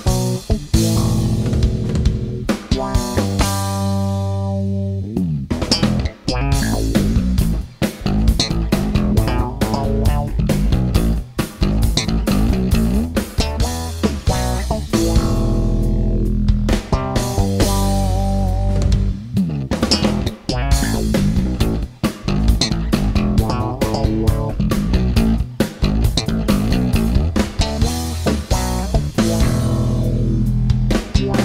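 Four-string Warwick electric bass played fingerstyle through an amplifier: fast, busy runs of plucked notes, with one long held, ringing note about three to five seconds in.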